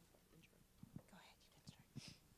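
Near silence at a lectern: a few faint soft knocks, about a second in and again near the end, as the microphone and lectern are handled, with a faint whisper off the microphone.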